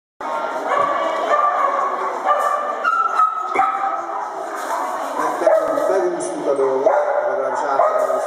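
A dog barking and yipping repeatedly during a dog agility run, mixed with people's voices.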